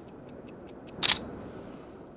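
Camera self-timer beeping rapidly, about five short high beeps a second, then the shutter firing once a little over a second in.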